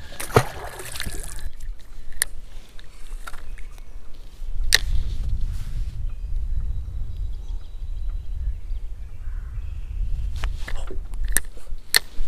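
A small splash as a released bass drops back into the lake, then scattered clicks and knocks from handling a fishing rod in a kayak. A low rumble sets in about four seconds in.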